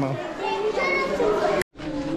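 People's voices chattering among a crowd, with a split-second gap of total silence about three-quarters of the way through.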